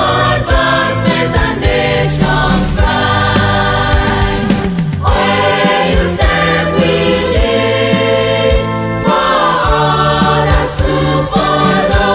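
A university anthem sung by a choir over instrumental backing, with a steady drum beat.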